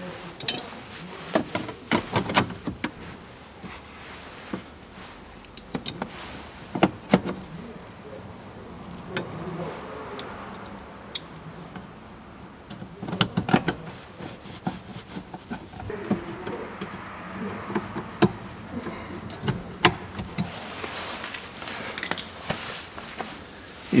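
Irregular clicks and knocks of a metal support strip being refitted under a car's glovebox opening, with hands and a tool working at its fasteners against the plastic dashboard trim.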